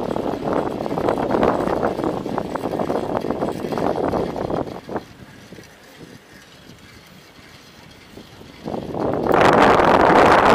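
Wind buffeting and rumbling on the Yi 4K action camera's built-in microphone as it moves along the street. The noise drops away sharply about five seconds in and comes back louder near the end.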